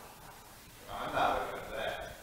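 A brief, indistinct human vocal sound starting about a second in.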